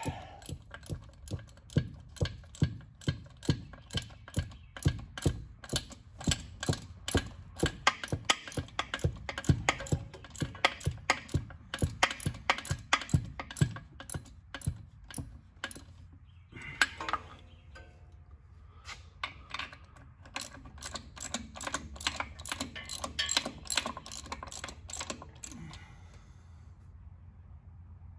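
Ratchet wrench clicking in steady strokes, about two clicks a second, as the top bolts of an A833 four-speed manual transmission are run in toward snug. It stops briefly about two-thirds through, then picks up again.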